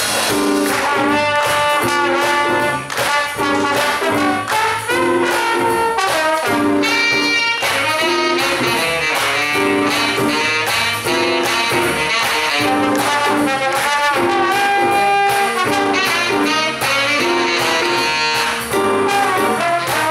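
Jazz big band playing live: saxophones, trumpets and trombones together in short repeated chords over a steady beat.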